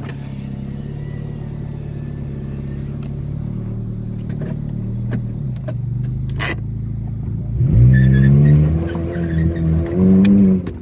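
Mitsubishi Eclipse engine idling steadily, heard from inside the cabin, with a couple of sharp clicks. About eight seconds in it revs up loudly as the car pulls away and accelerates.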